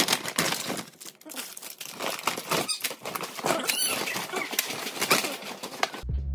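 Paper grocery bags and plastic baby-food pouches rustling and crinkling as they are handled and unpacked, in irregular bursts.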